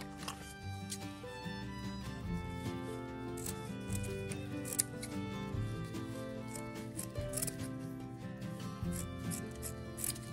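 Background music with steady held notes, over a few short snips and handling sounds of scissors cutting jute rope.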